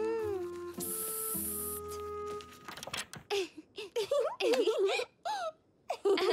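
Cartoon soundtrack: soft background music with a short hiss about a second in, then a child's wordless voice rising and falling in pitch. A single light-switch click comes at the very end.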